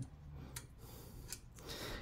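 Two faint clicks, about a second apart, as the Xeon CPU's plastic carrier is pressed firmly onto the cooler's mounting bracket and clips into place.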